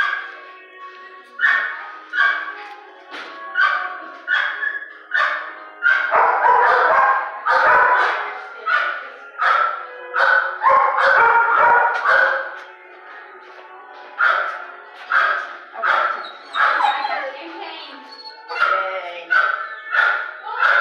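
Dogs barking over and over in an animal-shelter kennel, one or two sharp barks a second, busiest in the middle with a brief lull after.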